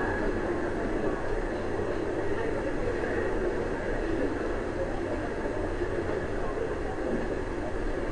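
A large audience laughing and murmuring together, a steady wash of many voices with no single speaker standing out.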